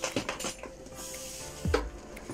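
A leather crossbody bag and its strap being handled and shifted on a table: a few light knocks and clinks from the buckle and metal fittings, with a thump near the end.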